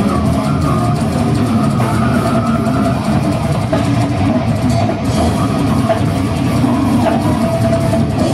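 Brutal death metal played live by a band: distorted electric guitar and drum kit, loud and continuous.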